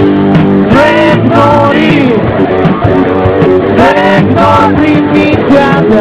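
Rock band playing live and loud, with guitar out front over drums and keyboards; the lead line bends up and down in pitch.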